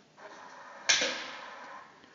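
Golf club hitting a ball off a driving-range mat during a full swing: a single sharp crack about a second in that fades away over the next second.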